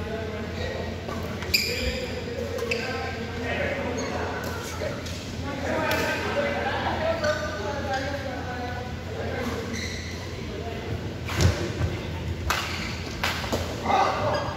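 Badminton rally in a large hall: sharp smacks of rackets striking a shuttlecock, several in quick succession near the end, over the voices of players and onlookers.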